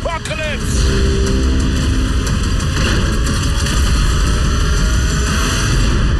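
A man's shouted line ends about half a second in, then loud, dense trailer sound design with a heavy low rumble fills the rest, with a faint rising whine in the middle.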